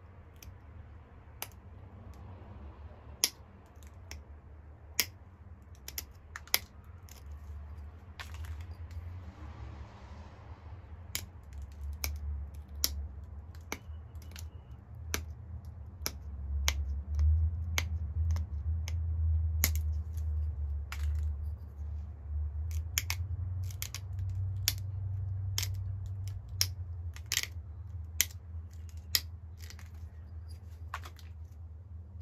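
Pressure flaking a Flint Ridge flint point: sharp clicks as small flakes snap off the edge under the flaker. The clicks come irregularly, sparse at first and more often after about ten seconds, over a low rumble that grows louder in the second half.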